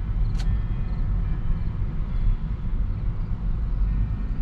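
Steady low rumble of tyre and road noise inside a Tesla Model 3's cabin as the electric car rolls slowly across asphalt on Autopilot, with one sharp click about half a second in.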